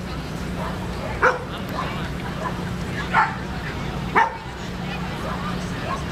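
A dog barks three short times, about one, three and four seconds in, over background chatter and a steady low hum.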